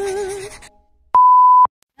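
The last notes of an intro jingle fade out, then a single loud, steady electronic beep, one pure high tone lasting about half a second.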